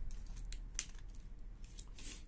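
Faint clicks and light handling noise as the cylindrical lithium-ion cells of a laptop battery pack are pried out of its black plastic casing by hand, four or so sharp little clicks spread through it. The cells are stuck fast and coming out with difficulty.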